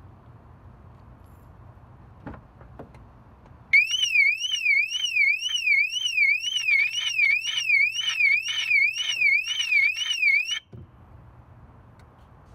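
Electronic car alarm sounding a loud warbling tone that sweeps up and down about twice a second for roughly seven seconds, starting and cutting off abruptly. Two light knocks come just before it.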